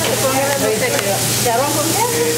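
Steady sizzling of pupusas frying on a hot griddle, with people talking over it and a low steady hum beneath.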